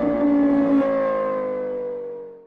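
Engine revving sound effect with the revs slowly falling as it fades out.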